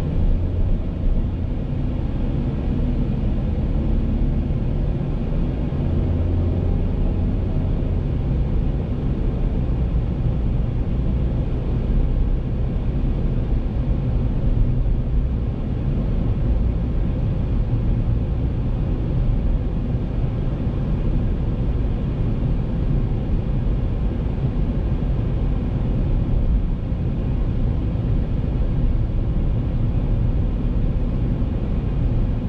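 A car driving along a road, heard from inside the cabin: a steady low rumble of tyre and engine noise.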